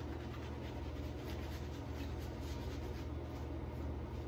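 Shaving brush swirled quickly over the face, building lather: a soft, rapid scratchy brushing, over a steady low hum.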